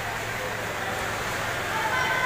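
Steady ambience of a covered swimming pool: an even hiss with a low, steady hum underneath and no distinct splashes or knocks.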